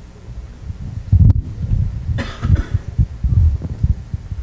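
Handling noise from a handheld microphone: irregular low thumps and bumps as it is moved about, with a loud knock about a second in and a short rushing noise just after two seconds.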